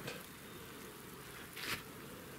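Quiet background noise between spoken remarks, with one short soft hiss near the end.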